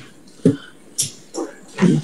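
Brief, scattered voice sounds in a meeting room: a short voiced syllable about half a second in, a sharp hiss about a second in, and speech starting near the end.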